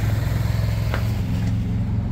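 A steady low motor hum, like an engine idling, with a faint click about a second in.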